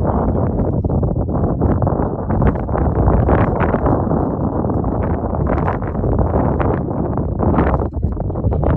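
Wind buffeting a phone's microphone: a loud, steady rumble with gusty surges.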